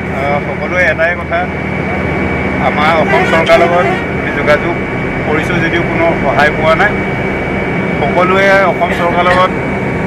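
Steady drone of a moving passenger bus heard from inside the cabin, starting suddenly as the clip begins, with a man talking over it.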